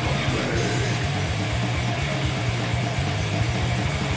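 Live heavy metal band playing: distorted electric guitars and bass over fast drumming, loud and dense throughout.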